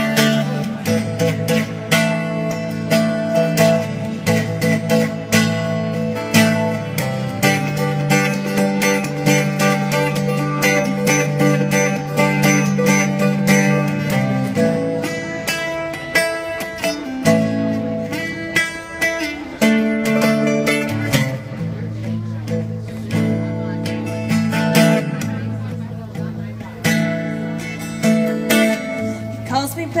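Acoustic guitar strummed steadily through an instrumental passage of a song, chords changing every few seconds with no singing.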